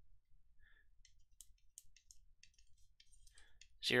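Faint, irregular clicks and taps of a stylus writing on a pen tablet.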